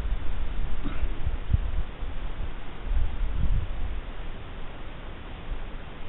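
Outdoor ambience: uneven low wind rumble on the microphone over a faint steady hiss.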